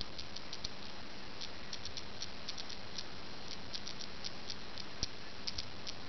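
A cube of small neodymium magnet balls, built from wobbly magnet-ball coins, clicking as it is squeezed and flexed in the fingers: a run of faint, irregular little clicks, the balls shifting and snapping against each other. One click about five seconds in is a little louder.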